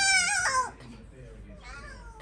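A young girl's long, high-pitched squeal, held steady and then dropping off about half a second in.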